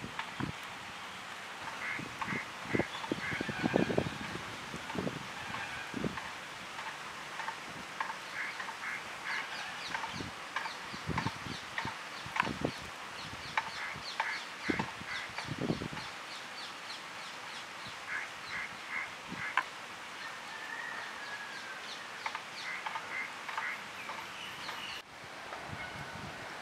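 Small birds chirping repeatedly in short runs of high notes, with occasional soft, wet squelches of hands rubbing masala paste into a whole plucked duck.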